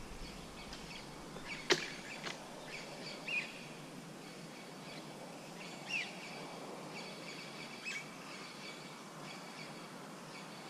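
Quiet riverbank ambience: a steady faint background hiss with a few short bird chirps, about three seconds apart. A single sharp click comes a little under two seconds in and is the loudest sound.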